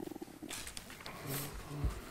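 Low-level room noise with faint breathing close to a desk microphone, a few small ticks, and a short low hummed voice sound about a second and a half in.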